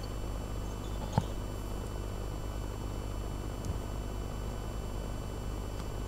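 Steady low electrical hum and hiss of an open broadcast audio line, with one brief click about a second in.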